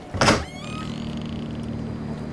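A door being pulled open: a sudden loud burst, then a brief squeak, followed by a steady low hum.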